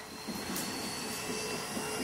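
Helicopter noise from a movie trailer's soundtrack, heard through a screen's speakers: a steady, even drone.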